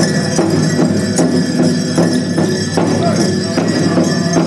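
Powwow drum and singers: a steady, even drumbeat about two and a half beats a second under chanted singing, with bells and jingles on the dancers' regalia shaking along.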